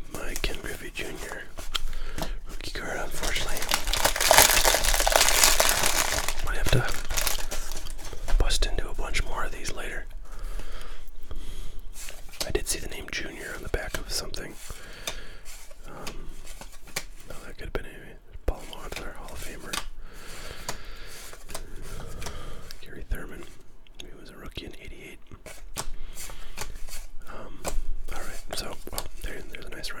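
1989 Donruss cardboard baseball cards being slid and flicked one by one through the hands: soft papery rustling, scrapes and small clicks. The rustling is loudest from about three to six seconds in.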